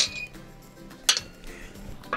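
A small metal cooking pot clinking against the steel grate over a campfire as it is set down: two short, sharp clinks, one at the start and one about a second in.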